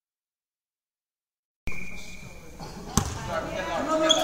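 Silence for the first second and a half, then sports hall sound cuts in abruptly. A handball bounces once, sharply, on the wooden floor about three seconds in, and players' voices follow.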